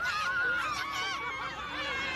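A young woman's shrill, excited voice squealing in a high, wavering pitch.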